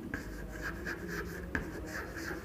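Chalk writing on a chalkboard: a string of short chalk strokes, with one sharp tap of the chalk about one and a half seconds in.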